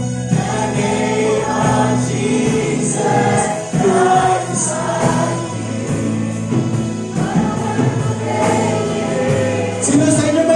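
Congregation and worship leader singing a worship song together, with a live band of keyboard and electric guitar.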